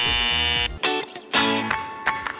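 A harsh, steady buzzing tone lasting under a second, then the intro music starts with a few plucked notes.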